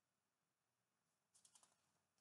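Near silence, with a few faint soft clicks about one and a half seconds in, from a picture-book page being turned.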